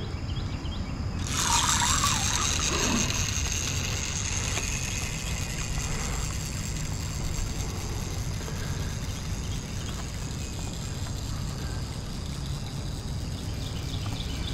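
Clockwork wind-up motor of a wooden toy boat whirring as it drives the propeller through the water. It starts suddenly about a second in as the boat is let go, then fades slowly as the boat runs away.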